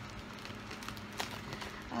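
Steady low hum and hiss of an electric fan running, with a few faint clicks about a second in.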